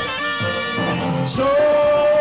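A live band with trumpet playing a brass line, then a singer comes in about a second and a half in with a held, wavering note, louder than the band.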